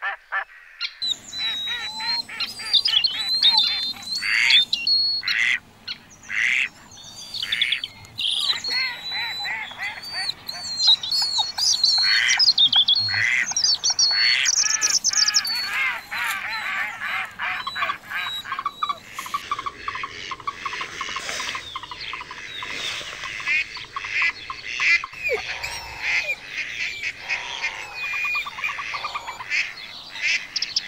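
Several birds singing and calling at once: clear whistled notes and chirps, becoming a denser run of rapid notes in the second half.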